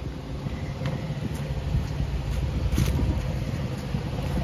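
Blue Bird school bus engine idling with a steady low hum, plus a few faint clicks.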